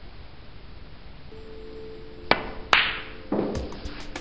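Snooker cue tip striking the cue ball, then a sharp click as the cue ball hits a red less than half a second later, followed by a duller knock as the red drops into the pocket. Faint background music plays under it.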